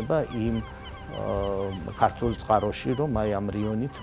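A man speaking haltingly, with a drawn-out, level 'ehh' hesitation about a second in and short broken syllables around it.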